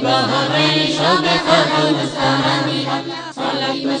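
A group of voices singing a Bengali Islamic qasida (devotional song) in a chant-like melody over a steady low drone.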